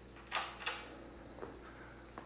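Crickets chirping steadily in the background. About a third of a second in come two brief scuffing sounds close together, and a fainter one follows later, as someone moves over a concrete floor among plastic sheeting.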